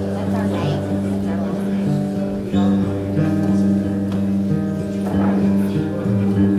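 Acoustic guitar played slowly, with chords struck every second or so and left ringing.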